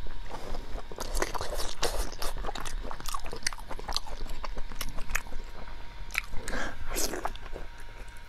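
Close-miked chewing and biting on soft braised meat: wet, sticky mouth clicks come quickly and steadily, with a couple of louder noisy bites or slurps near the end.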